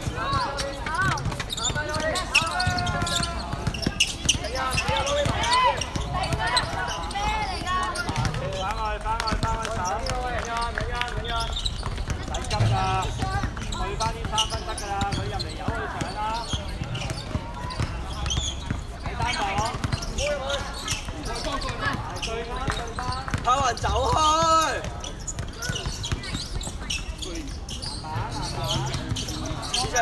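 Voices of players and onlookers calling out on an outdoor basketball court, over a basketball bouncing on the court surface as it is dribbled. One louder shout late on.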